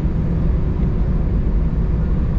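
Inside the cabin of an Airbus A319 taxiing: a steady low rumble of the jet engines and the airframe rolling over the tarmac, with a faint even whine above it.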